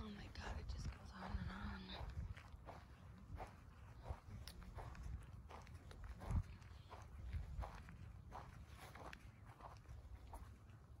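Footsteps walking at a steady pace on grass, a short soft step about every half second, with one louder step a little after six seconds in. A faint voice is heard briefly in the first two seconds.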